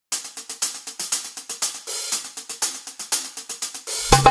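A fast, even drum rhythm of light, crisp, hi-hat-like strikes, about eight a second.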